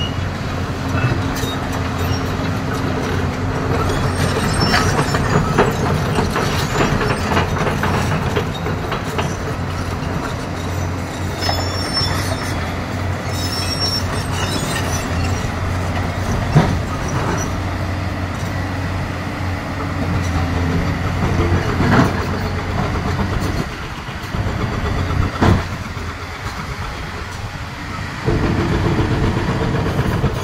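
JCB tracked excavator's diesel engine running steadily under load, with occasional sharp clanks and knocks from the bucket working rock.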